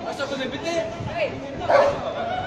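Police dog on a leash barking, with people talking around it.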